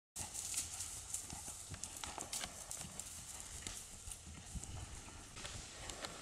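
A ridden horse's hooves striking grass turf in a quick, uneven run of hoofbeats, several a second, as it trots and canters.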